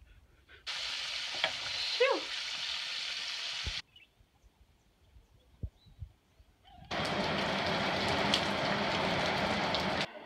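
Breaded food frying in hot oil in a cast-iron pot, stirred with a wooden spoon, with a brief falling squeal about two seconds in. After a quiet gap with a few soft knocks, steady rain sets in from about seven seconds in and is the loudest sound.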